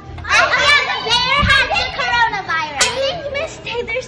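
Several children talking and calling out over one another in high voices, with a short thump about a second and a half in.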